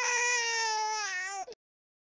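A baby's single cry, about one and a half seconds long, falling slightly in pitch and wavering near the end before it stops abruptly.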